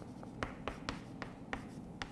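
Chalk writing on a blackboard: a quick series of short taps and scratches as a word is written in chalk.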